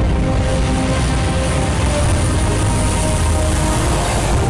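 Four-engine turboprop military transport, a C-130 Hercules, taking off: loud, steady propeller and engine noise with a high, steady turbine whine, and faint music underneath.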